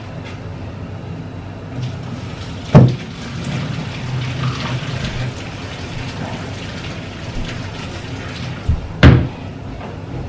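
A metal pot knocking against a stainless steel sink, two loud clunks about three seconds in and near the end, with softer water and rinsing sounds between as rice is washed.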